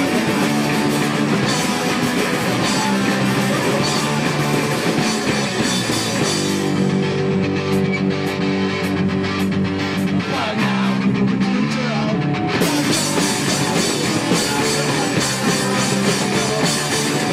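Punk rock band playing live: distorted electric guitars, bass and drum kit, heavy on the bass because it is recorded right beside the bass amp. The high end thins out for several seconds in the middle, then comes back in full.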